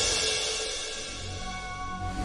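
Eerie background score: a shimmering high chord with several held notes, fading down over the two seconds.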